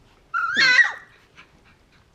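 A 20-day-old golden retriever puppy gives one high-pitched cry, about half a second long, that rises and then falls in pitch.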